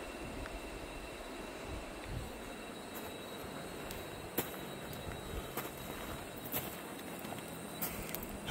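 Faint, steady outdoor background noise with a few light clicks and taps.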